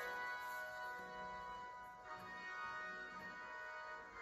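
Recording of a choral anthem with organ, played back through a tablet's speaker: held chords that change about halfway through.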